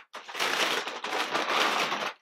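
Tissue paper rustling and crinkling inside a cardboard shoebox as sneakers wrapped in it are handled and lifted out: a steady crackly noise.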